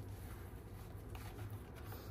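Faint rustling and handling of a fabric ribbon against a paper box as the ribbon is tied into a bow, over a low steady hum.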